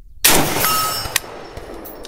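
A single 7.62×39 rifle shot from a Palmetto State Army AK-47. About half a second later comes the short, high ring of the bullet striking a steel target at 100 yards: a hit.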